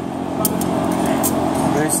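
Automatic-transmission clutch plates, steel and friction discs, rubbing and scraping against each other as they are handled, with a few sharp metallic clicks, over a steady background hum.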